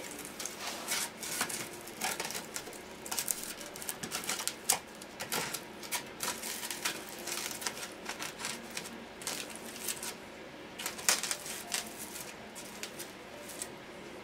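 Green floral foam round being pushed down onto the ends of plastic flex tubing, the tubes scratching and squeaking in the holes cut through the foam. The sound is an irregular run of short scratches and clicks.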